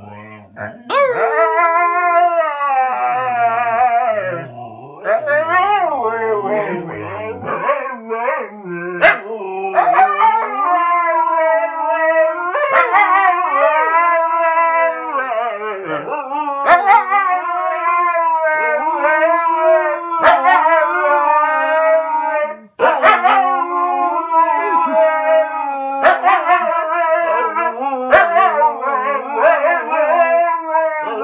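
Two Siberian huskies howling together in long, wavering, sliding calls, their voices overlapping at two different pitches. The howling breaks off briefly about three-quarters of the way in and then resumes.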